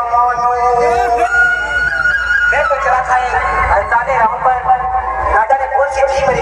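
Loud music played through a large DJ sound system: a held, voice-like melodic line that slides between notes, over a steady deep bass.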